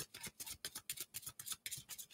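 A deck of oracle cards being shuffled by hand: a quick, even run of soft card flicks, about six a second.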